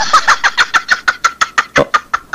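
Engine sound effect in a radio drama: rapid, even pulses about seven a second that fade away.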